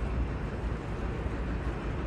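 Steady low background rumble of a city construction site, with no distinct event standing out.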